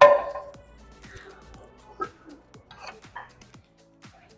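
A loud metallic clang at the start with a ringing tail, a steel weight plate knocking against a plate-loaded hip-thrust machine, then a smaller knock about two seconds in. Background music with a steady beat runs under it.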